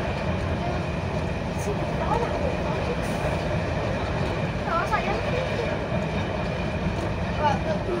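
Class 108 diesel multiple unit heard from inside the driving cab while running along the line: a steady low rumble from its underfloor diesel engines and wheels on the rails, with a thin, steady high whine over it.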